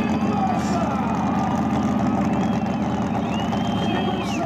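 A burnout car's engine idling with an even, pulsing beat after its burnout, with a voice over it.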